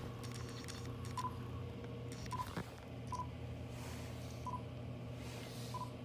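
Five short, faint electronic beeps at one pitch, irregularly spaced about a second apart, over a low steady hum.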